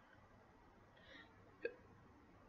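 Near silence, broken by a single short hiccup from a woman about one and a half seconds in.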